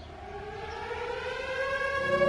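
Air-raid siren winding up: a single tone with overtones sliding slowly upward in pitch and growing steadily louder, over a low rumble.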